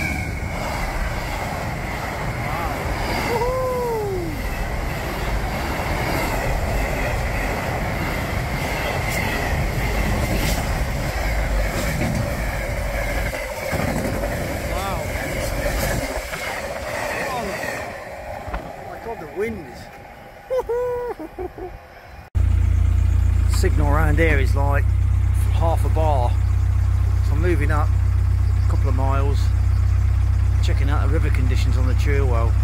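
A Class 66 diesel freight locomotive hauling container wagons passes close by, a steady loud rumble of the train that fades away after about eighteen seconds. About two-thirds of the way through it cuts to a steady low engine hum of a narrowboat under way, with high chirps over it.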